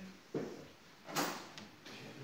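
Two short handling noises from work at the base of a white wooden stair safety gate: a dull knock about a third of a second in, then a louder, sharper scraping clack just after a second.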